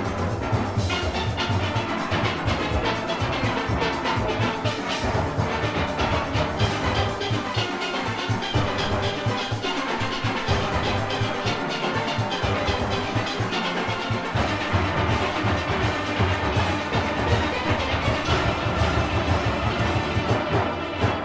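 Full steel orchestra playing: many steelpans struck with sticks over a driving drum and percussion rhythm, with a strong bass.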